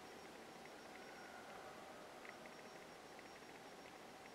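Near silence: faint room tone and hiss, with a couple of tiny ticks a little over two seconds in.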